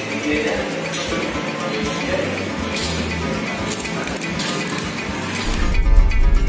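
Background music and voices over street ambience. Near the end a louder plucked-guitar music track with a steady bass comes in suddenly.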